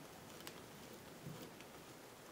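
Near silence with two faint sounds from a hand-held Robertson screwdriver driving a small wood screw through a metal D-ring into a wooden canvas stretcher bar: a light click about a quarter of the way in and a soft knock just past halfway.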